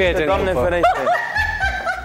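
Laughter mixed with a man's voice saying "nu", over background music.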